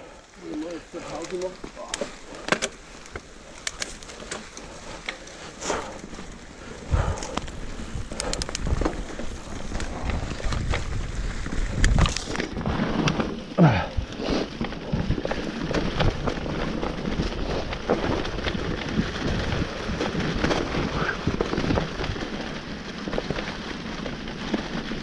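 Enduro mountain bike riding fast down a trail covered in dry leaves: tyres crunching and rustling through the leaf litter, with frequent sharp knocks and rattles from the bike over bumps. The noise grows louder about a third of the way in as the bike picks up speed.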